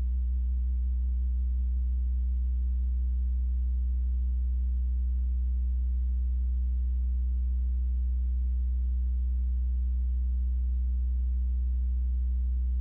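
A steady low electrical hum on the audio feed, holding at one level throughout, with no other sound.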